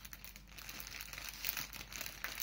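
Rustling and crinkling as hands pull at and spread a printed rayon-cotton palazzo, a run of irregular small crackles.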